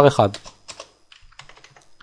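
Computer keyboard being typed on: a scattered run of faint key clicks as code is entered.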